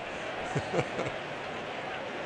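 Ballpark crowd ambience: the steady din of a large stadium crowd, with faint snatches of voices about half a second in.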